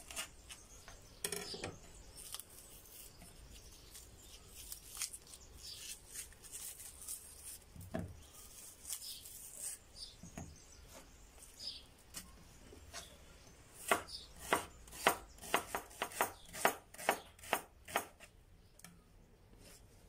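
Chef's knife slicing an onion on a bamboo cutting board, the blade knocking on the board in a quick run of about three strokes a second for several seconds in the second half. Before that, scattered soft clicks and rustles as the onion is trimmed and peeled by hand.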